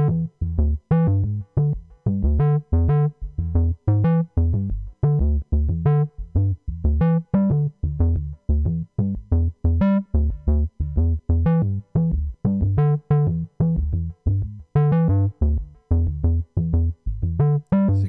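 A step-sequenced synth line from Ableton's Operator FM synthesizer: short, bass-heavy notes, about two to three a second, changing in pitch and brightness from note to note.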